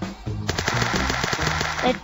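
Cartoon sound effect: a rapid rattle of clicks, about ten a second for just over a second, as digits pop onto the number tiles, over light background music.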